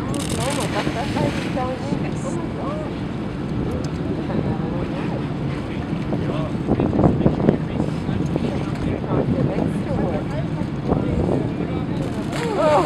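Wind buffeting the microphone over steady ship and sea noise, with onlookers' voices faintly in the background. The buffeting is loudest about seven seconds in.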